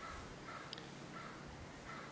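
Several faint, short bird calls over a quiet outdoor background.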